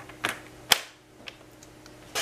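Paper trimmer being set for a cut on cardstock: a short scrape, then a single sharp click from the trimmer's blade track about three-quarters of a second in, and a faint tick a little later.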